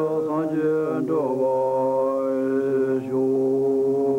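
Wordless voices chanting in long held notes over a low drone; the notes shift about a second in and then hold steady.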